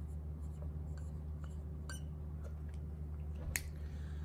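Felt-tip marker writing a word on a hard surface: faint scattered taps and scratches over a steady low hum, with a sharper click about three and a half seconds in.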